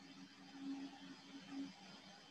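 Faint steady low hum with hiss over a video call, with two brief slightly louder swells, about two-thirds of a second and one and a half seconds in. A shared video is playing, but its sound comes through far too quietly to make out.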